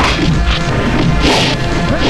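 Film fight sound effects: several punch whacks and a noisier crash about midway, over background score music.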